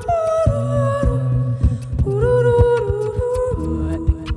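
A cappella vocal loop music: a woman's voice holding long hummed and sung notes in layered harmony, shifting pitch every second or so, over a low bass line and a steady percussive beat, played and layered live on a Boss RC-202 loop station.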